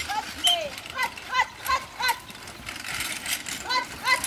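Short, high-pitched shouted voice calls, a driver's or groom's commands urging a carriage pony on through the obstacle. They come in quick runs, in the first two seconds and again near the end.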